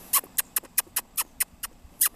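A man making a rapid run of short, high, squeaky clicks with his mouth, about five a second: the chattering call he makes when feeding hummingbirds, mimicking their Flipper-like chatter.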